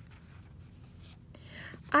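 A journal page being turned over: soft, quiet paper rustling and sliding, swelling briefly near the end.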